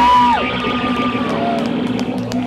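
Live rock band with electric guitars stopping playing: the low end of the full band drops out at the start, leaving a steady amplifier hum and a few high tones that slide up, hold and fall away.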